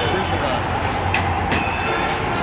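Busy street noise: a steady low drone from heavy vehicle traffic, with people's voices mixed in and two sharp clicks a little past halfway.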